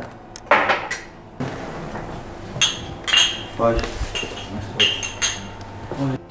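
Drinking glasses clinking together in a toast, several short ringing chinks in the second half, over the hubbub of people at the table.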